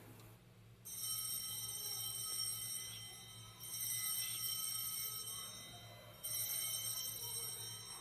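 Altar bells rung three times at the elevation of the chalice, the rings about two and a half seconds apart, each a cluster of high bright tones that fades away.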